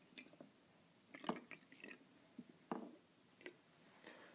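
Faint pouring and dripping of orange extract from a small bottle onto eggnog in plastic shot cups. It comes as a few short, separate wet sounds, the clearest about a second in.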